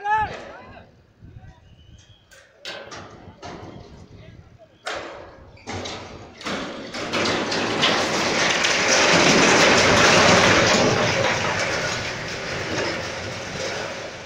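Steel frame building with roof purlins collapsing. First a few scattered creaks and snaps, then from about seven seconds in a long, loud rush of crashing and grinding metal that fades near the end.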